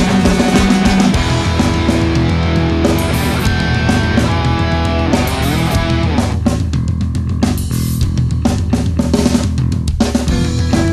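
Hardcore punk band playing an instrumental passage: distorted electric guitars over a driving drum kit, with no vocals. About six seconds in, the drumming thins out to sparser hits under the sustained guitar chords.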